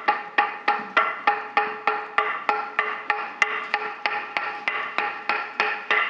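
Wooden semantron (talanton) struck with a mallet in a steady, quick rhythm of about three strokes a second, the pitch shifting from stroke to stroke as different spots on the board are hit. It is the monastery call to the Compline service.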